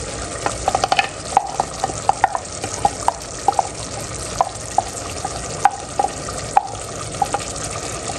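Chicken in tomato masala sizzling in a steel pot, with many light clinks as a glass bowl knocks against the pot while chopped green chillies are tipped in.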